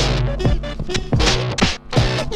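Turntable scratching over a band backing, with several quick back-and-forth record sweeps cutting through the groove. The music drops out for a split second just before the end.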